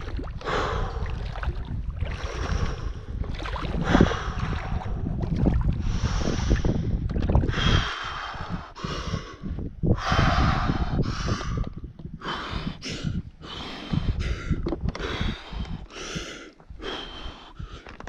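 A man gasping and breathing hard in short, noisy bursts as he wades into an ice-cold mountain lake, the breaths coming quicker once he is deep in the water: the cold-shock reflex. Wind buffets the microphone through the first half.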